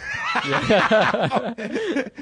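Men laughing together, loudly, their laughs overlapping.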